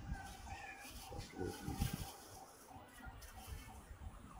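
Faint steady rush of a fast mountain river, with distant, indistinct high voices or calls now and then.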